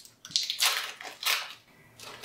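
Thin plastic wrapper of a Dairylea processed cheese slice crinkling in a few short bursts as it is peeled open by hand.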